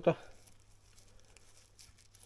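A spoken word at the very start, then quiet room tone with a low steady hum and a few faint small ticks.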